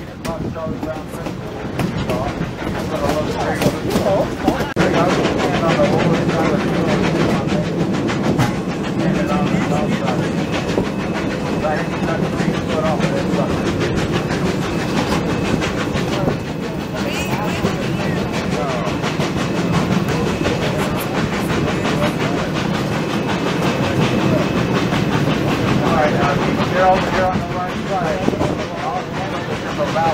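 Three-foot narrow-gauge steam train running, its wheels clattering over the rail joints, heard from an open passenger car.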